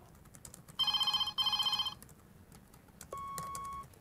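Electronic telephone ringer giving one British-style double ring: two short trilling bursts in quick succession. Near the end comes a click and a single steady electronic beep as the answering machine picks up the call.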